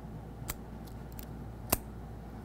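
Two short clicks, the second louder and about a second and a quarter after the first, over a low steady hum.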